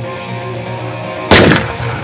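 Film-score music with sustained notes, cut a little over a second in by one loud sudden bang that dies away over about half a second.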